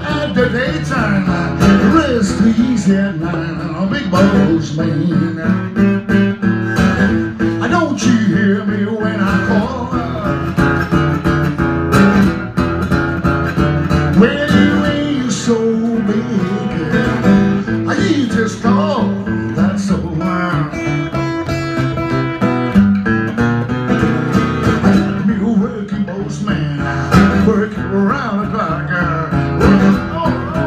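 Acoustic guitar played live in a blues style, steadily picked and strummed.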